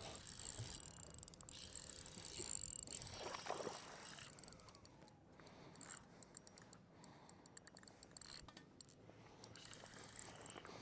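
A fishing reel being cranked after a cast, giving a rapid run of light mechanical ticks in the second half.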